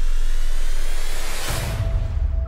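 Dramatic trailer score and sound design: a loud rising whoosh over a deep bass rumble, swelling to a hit about one and a half seconds in.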